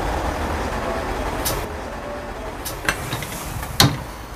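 Steady low rumble and hiss of a Shinkansen bullet train standing at a station platform, with a few sharp clicks in the second half and a louder knock just before the end.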